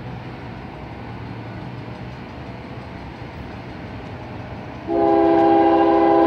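Approaching diesel freight locomotives rumble steadily. About five seconds in, the lead Union Pacific locomotive's air horn starts, a loud chord of several steady notes held to the end.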